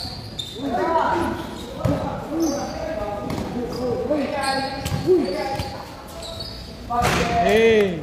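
Basketball game on a hard court: a ball bouncing a few times on the floor and players shouting short calls to each other, echoing under a high metal roof. The loudest call is a longer shout near the end.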